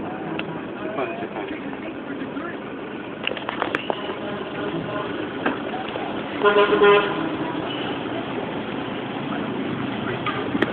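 Road traffic noise with a car horn honking once, under a second long, about six and a half seconds in.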